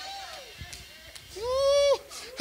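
A brief lull, then near the end a single high, held vocal exclamation, an 'ooh'-like call lasting about half a second.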